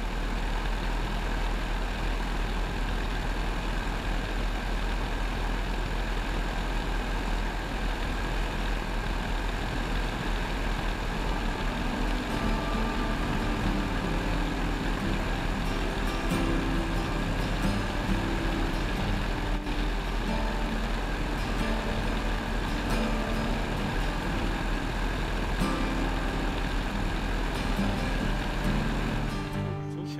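Steady engine and wind noise of a Hansa-Brandenburg C.I replica biplane in flight, heard from on board. Music with sustained low notes fades in under it about halfway through.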